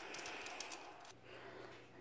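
Faint background noise with a few soft ticks, giving way about halfway to a steady low hum.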